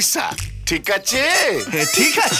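A rooster-like crowing call over background music with a bass beat, ending in a long falling note about halfway through, with voices alongside.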